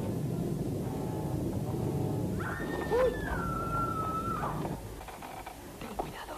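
A long, high, howl-like cry of about two seconds, beginning about two and a half seconds in: it starts high, dips a little and holds before breaking off. It sits over a low film-soundtrack rumble that drops away shortly after.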